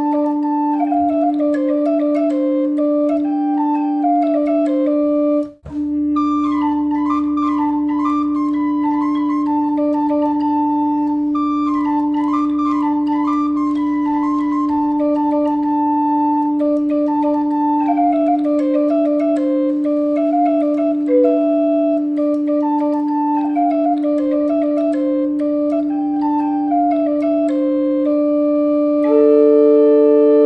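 Portative organ with wooden spruce pipes playing a quick medieval dance tune over a steady held low note that sounds throughout like a drone. The sound drops out for an instant about five and a half seconds in, and near the end the tune settles on a held chord.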